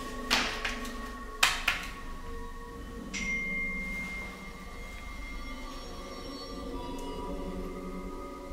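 Soft chime-like music with four sharp knocks in the first two seconds, from hands striking a wall-mounted electronic keypad. A held high tone enters about three seconds in.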